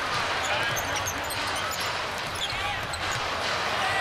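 Basketball arena crowd noise under a ball being dribbled up the hardwood court, with short, high sneaker squeaks scattered throughout.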